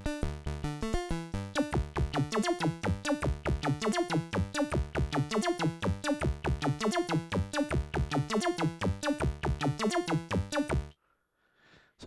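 Modular synthesizer sequence playing a fast, even run of short, snappy notes through Oakley Journeyman filters. The filters are opened on each step by a Postman attack-release envelope with its attack turned up slightly. The sequence stops suddenly about a second before the end.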